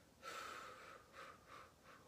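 A woman exhales deliberately and audibly through the mouth as part of a breathing exercise: one long breathy out-breath starting just after the start and fading, then two short, fainter puffs of breath.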